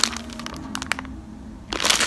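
Plastic candy bags crinkling and crackling as they are handled, with a quieter pause in the middle before more crinkling near the end.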